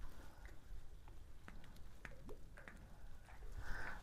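Faint low wind rumble on the microphone, with a few soft scattered clicks.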